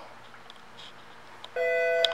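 Faint room hiss, then about one and a half seconds in a steady electronic alert tone from an overhead paging system, the chime that comes before a page.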